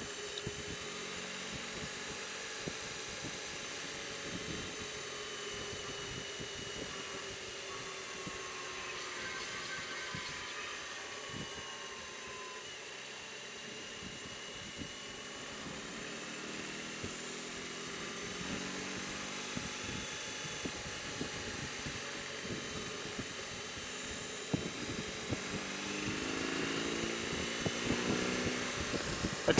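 BMW R18 Transcontinental's big boxer twin running under way in third gear, under wind noise. The engine note sinks as the bike slows, then climbs steadily over the last several seconds as it accelerates.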